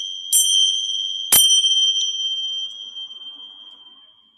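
Tingsha cymbals struck together: a strike about a third of a second in, the loudest about a second and a half in, and a lighter touch at two seconds. Each leaves a high, bright ring that fades away by the end. Rung to mark the close of the yoga nidra practice.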